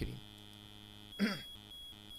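Steady low electrical mains hum with a faint high whine, the background noise of the recording. A brief, quiet vocal sound from the speaker comes about a second in.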